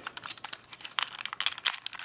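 Hard plastic parts of a transforming Millennium Falcon toy clicking and rattling as they are handled and folded into robot mode: an irregular run of small sharp clicks.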